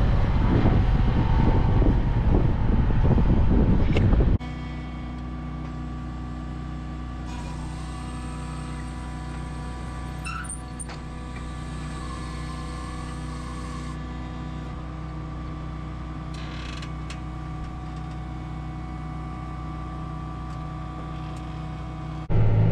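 Large farm tractor's diesel engine running, loud and rough for the first four seconds. After a sudden drop, it settles into a steadier, quieter drone with several steady engine tones.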